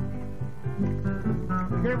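A Peruvian vals: guitar accompaniment plays between sung lines, and a man's singing voice comes back in near the end.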